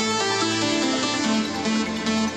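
Live electronic dance music played on synthesizer keyboards: a repeating melodic pattern of short pitched notes over sustained chords.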